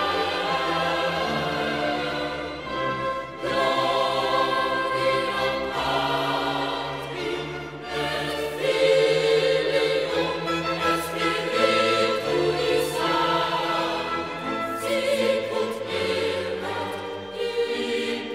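Boys' choir singing a baroque sacred cantata in Latin with a small orchestra, the music going on without a break.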